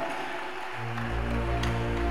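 Soft background music of sustained, held chords, with a deep bass note coming in under a second in.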